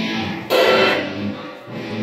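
Electric guitar playing: a ringing chord fades, and a new one is struck hard about half a second in and rings down.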